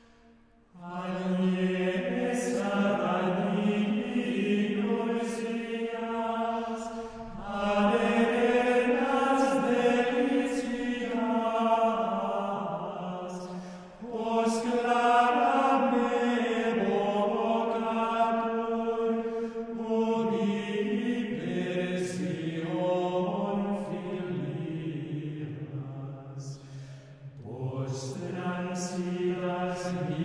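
Male schola singing medieval plainchant in unison, unaccompanied, in phrases that pause briefly for breath about every six to seven seconds.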